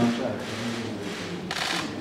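A pause in speech over a handheld microphone, with faint voices and a low steady hum in the hall. A short hiss comes about one and a half seconds in, just before the man speaks again.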